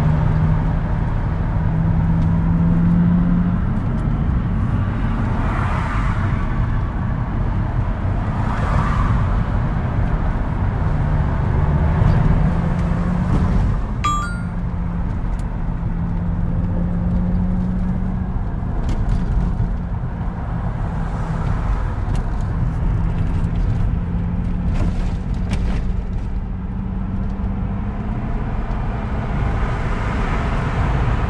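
Car interior road noise while driving in traffic: a continuous low rumble of tyres and engine with a steady low drone, swelling now and then. A single sharp click about halfway through.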